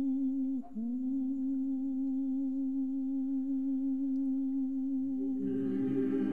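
One long hummed vocal note held at a steady pitch, with a brief dip under a second in. About five seconds in, lower choir voices come in beneath it with a fuller chord, a cappella Russian Orthodox choral singing.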